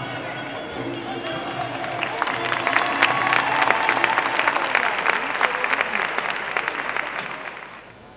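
Audience applauding. The clapping builds from about two seconds in and dies away near the end.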